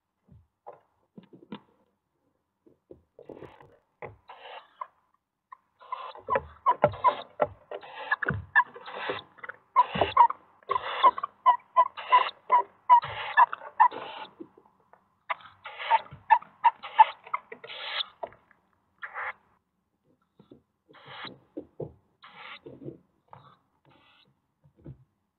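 Eurasian eagle-owl nest box as the female feeds her owlets: scraping, rustling and knocks of the owls shifting on the wood-chip floor, mixed with runs of short, high calls a few times a second from the begging owlets. The busiest stretch is in the middle, with sparser scratches near the end.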